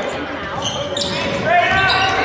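Basketball being dribbled on a hardwood gym floor during play, with voices from the court and stands calling out over it.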